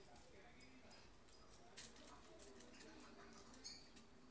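Near silence: faint outdoor background with weak distant voices and a single soft click a little under two seconds in.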